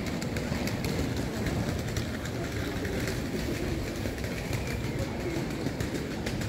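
Evening city-street background noise heard while walking: a steady low rumble with no single distinct sound standing out.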